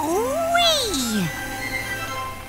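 A drawn-out cartoon cat meow that rises and then falls in pitch, over background music.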